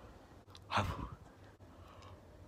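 A man lets out one short, breathy sigh about a second in.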